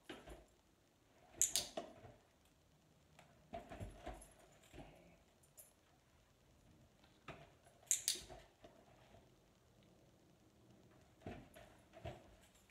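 Dog moving about on a mat and around an open suitcase: soft paw steps and light rustling. Two sharp, bright clicks stand out, about 1.5 s and 8 s in.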